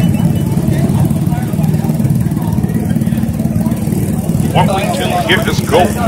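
Several small motorcycle engines idling together, a steady low rumble, with people's voices coming in over it near the end.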